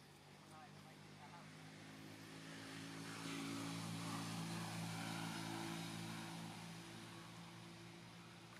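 Aircraft engine passing overhead, with a steady drone that grows louder, peaks about halfway through, then fades away. A few faint short squeaks come near the start.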